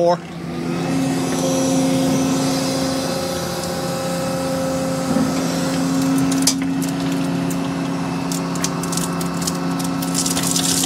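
Volvo excavator's diesel engine and hydraulics running steadily as the loaded bucket swings over. From about halfway through, scattered clicks of a few stones trickling from the bucket edge.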